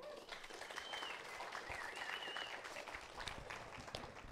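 Congregation applauding.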